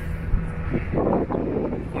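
Wind blowing across a phone microphone, a steady low rush.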